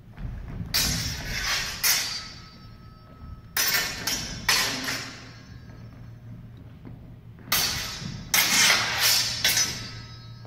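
Longsword blades clashing in three quick flurries of strikes, the steel ringing briefly after each exchange, echoing in a large gym hall.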